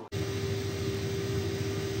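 Film soundtrack drone: a steady low rumble with a single held tone over it, starting abruptly after a brief gap.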